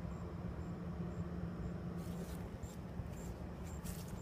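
Short, faint high-pitched chirps repeating about twice a second over a steady low hum, with a couple of brief rustles.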